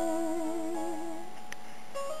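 A male voice singing live holds a long closing note with steady vibrato over a backing track, the note ending about a second and a quarter in while the sustained accompaniment chords carry on.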